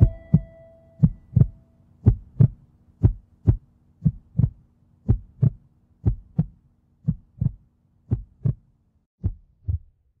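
Heartbeat sound effect: a double thump, lub-dub, about once a second, ten in all over a faint low hum, the last pair a little later than the rest before it stops. The song's final tone fades out under the first beat.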